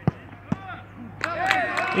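A football kicked hard from the penalty spot, one sharp thud, then a second, softer thud half a second later. About a second after that, several men's voices break into loud shouts and cheers.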